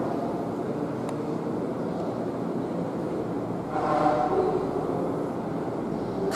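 Steady background hum of a large room with indistinct voices, one of them coming up a little about four seconds in.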